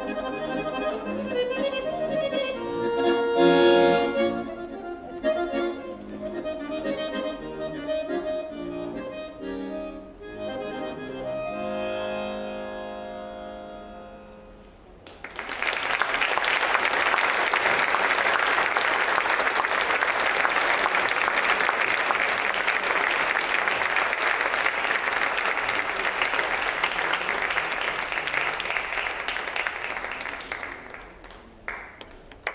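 Solo chromatic button accordion playing a melody, closing on a held chord that fades away. About fifteen seconds in, an audience starts applauding, and the applause carries on steadily through the rest.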